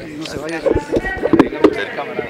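Several people talking at once at close range, broken by a few sharp knocks about halfway through and again near the end.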